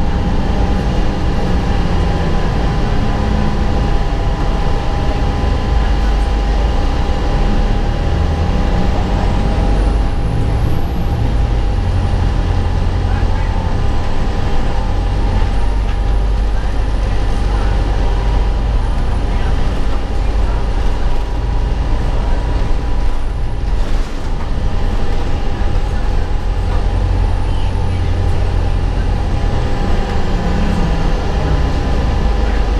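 Steady low rumble of a 2003 Gillig Phantom transit bus driving, heard from inside the passenger cabin, with a steady hum through it. A faint high whine rises and falls from about ten seconds in.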